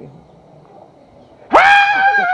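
A woman's loud, high-pitched exclamation that bursts in about one and a half seconds in, swooping up sharply and then held on one pitch; before it only faint background noise.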